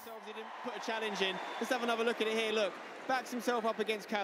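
Speech at a lower level than the talk around it: a man's voice commentating on the football highlights being played.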